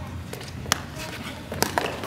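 A footbag kicked in a serve: one sharp tap a little under a second in, then a few lighter taps near the end as play goes on.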